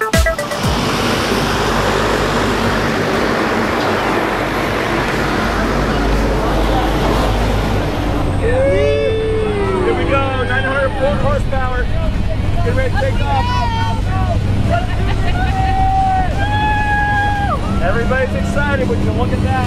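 Loud, steady rushing noise near the running jump plane for the first several seconds, giving way to the steady drone of the aircraft's engine heard from inside the cabin.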